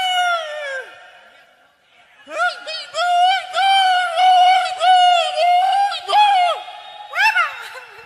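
High-pitched, wavering yells, like the gritos shouted at a live banda show: one trails off about a second in, a long held one fills the middle, and a short cry comes near the end.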